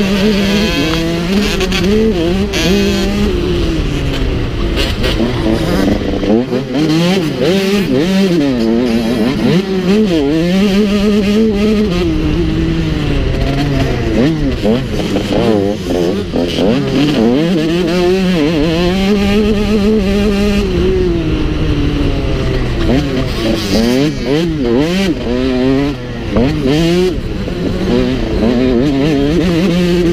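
Motocross bike engine heard from on board, revving hard and falling back again and again as the rider accelerates, shifts and slows through the track's straights and turns.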